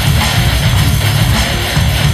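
Instrumental heavy metal music led by electric guitar over a drum kit, playing continuously.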